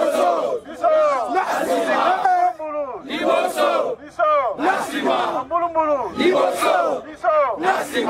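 A man shouting slogans in short phrases through a corded handheld loudhailer microphone, with a crowd of men around him shouting back.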